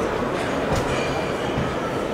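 Steady murmur of a crowd of visitors talking in a large echoing hall, with a low rumble underneath and a few light clicks.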